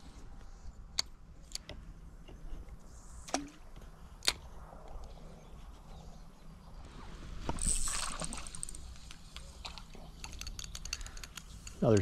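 Fishing rod and reel handling while a small green sunfish is hooked and brought in: scattered sharp clicks, a swell of rushing noise about eight seconds in, then a quick run of ticks from the reel and line as the fish comes up out of the water.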